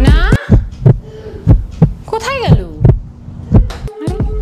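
Suspense heartbeat sound effect: a run of low, heavy thuds, roughly two to three a second. A falling swoop opens the run, and a pitched tone rises and falls about halfway through.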